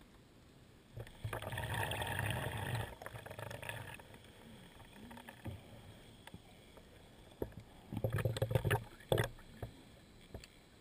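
Scuba diver's exhaled bubbles rushing from the regulator: a long gurgling burst about a second in, then a shorter crackling one near the end.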